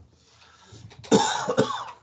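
A man coughing once, a short rough burst about a second in.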